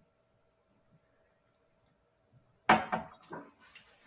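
Near quiet while the bourbon is sipped. About two-thirds of the way through there is a sudden sharp knock, the tasting glass meeting the stone counter, followed by brief breathy noises from the taster.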